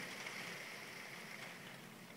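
Faint, steady rain falling outside, heard as an even hiss.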